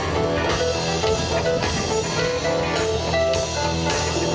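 Live rock band playing an instrumental passage: electric guitar over a drum kit, with no vocals.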